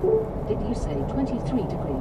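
Steady road and engine noise inside the cabin of a Ford Ranger pickup on the move, with a faint voice underneath.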